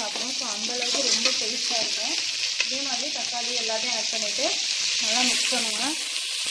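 Shallots, tomatoes, green chillies and garlic sizzling in hot oil in an aluminium pot, stirred continuously with a metal slotted spatula that scrapes against the pot.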